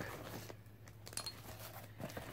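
Faint handling noise of a fabric tool bag being unpacked: soft rustling and a few light clicks as small metal survival-shovel parts are taken out and set down.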